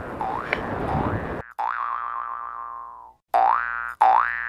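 Cartoon "boing" sound effect, a springy twang rising in pitch, repeated several times. The first ones sit over wind and water noise that cuts off suddenly about a third of the way in. Then comes one long boing that sags in pitch and fades out, a brief silence, and a fresh boing near the end.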